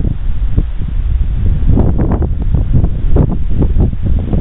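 Wind buffeting the microphone outdoors: a loud, steady low rumble with rustling, briefly broken by a few short murmurs or handling sounds partway through.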